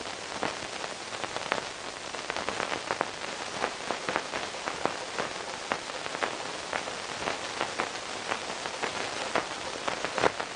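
A steady hiss dotted with many irregular crackles and ticks, like rain falling, with no voices or music.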